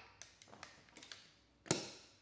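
Light plastic taps and clicks as a Snap Circuits part is handled and pressed onto the plastic base grid, with a sharper click near the end.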